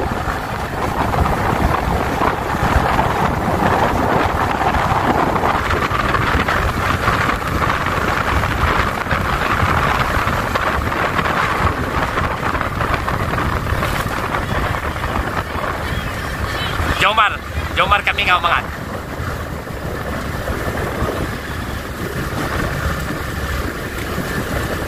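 Steady wind rushing over the microphone of a camera moving with a pack of road-race cyclists, over a continuous low road rumble. About 17 seconds in there is a brief shout.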